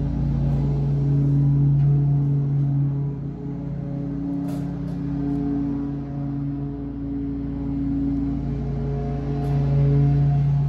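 Background music of slow, sustained low chords that change every couple of seconds, without vocals.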